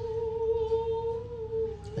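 A woman's singing voice holding one long, steady wordless note, which dips slightly and breaks off just before the end.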